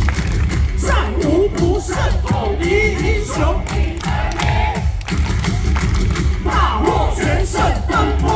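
Baseball cheer song played loud over the stadium speakers with a heavy, steady bass beat, the crowd chanting and clapping along to it.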